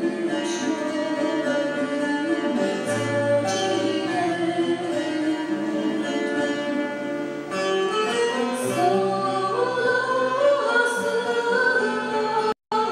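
Live acoustic ensemble music: guitars plucked and a violin bowed, with a woman singing.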